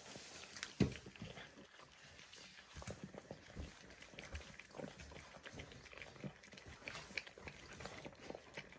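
Two puppies eating wet food from a steel bowl: faint, irregular chewing and smacking with small clicks, and one louder knock about a second in.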